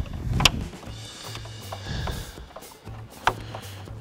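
Quiet background music under a few plastic clicks and knocks as the CD player's retaining tabs are pushed down and the unit is worked loose in the truck's dash; the sharpest clicks come about half a second in and again near three seconds.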